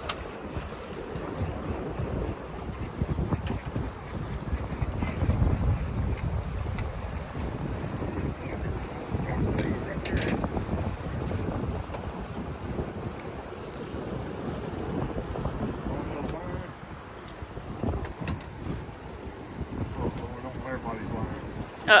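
Wind buffeting the microphone over moving river water, a gusty low rumble with one brief knock about ten seconds in.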